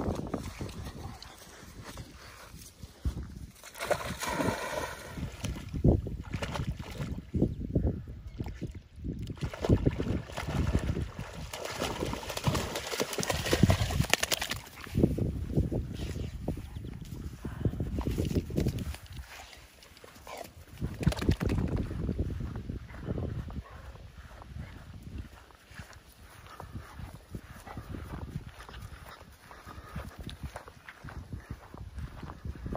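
A black Labrador playing at the water's edge: irregular splashing and rustling movement, with a short, high vocal sound about four seconds in.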